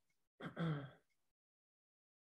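A woman's short wordless vocal sound, about half a second long, followed by dead silence.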